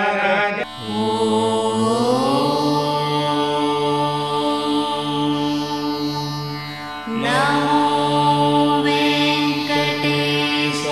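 Indian devotional music in Carnatic style: a voice holds long, steady notes over a drone. One note glides upward about two seconds in and is held, and a new long note starts just after seven seconds.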